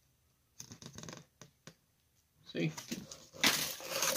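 A cardboard product box being handled, with a few faint rustles and scrapes about a second in and louder rustling near the end.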